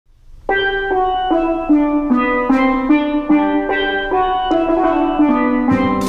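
Steel pan playing a solo melody of single struck, ringing notes, about three a second, starting about half a second in. A low note joins just before the end.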